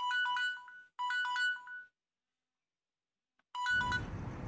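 Smartphone alarm tone: a short, bright beeping melody played twice in a row, then starting again near the end as acoustic guitar music comes in.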